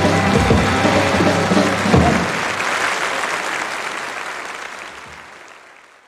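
A live band of electric guitar, upright bass and drum kit plays the song's last notes, ending with a final hit about two seconds in. Audience applause carries on under and after it and fades out to silence near the end.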